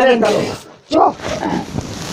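A person's voice: speech trails off, then a breathy hiss, then from about a second in a drawn-out, wavering vocal sound without clear words.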